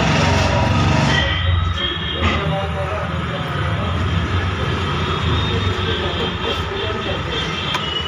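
Busy street and workshop background noise: a low motor-vehicle engine rumble, strongest in about the first second, then steady traffic noise with faint voices.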